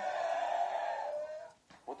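A man's long, strained vocal cry with no words, falling slightly in pitch and fading out after about a second and a half: an exasperated groan.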